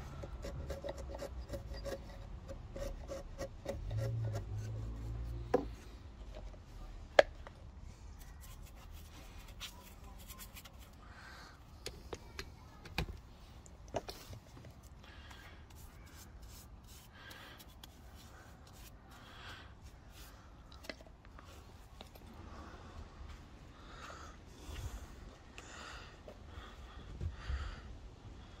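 A steel wood chisel paring and scraping out the bottom of a saw-cut notch in a square tanalised timber post. The scraping is strongest in the first five seconds, with a few sharp knocks, the loudest about seven seconds in.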